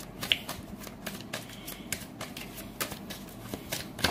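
A tarot deck being shuffled by hand: a run of irregular card clicks and flicks.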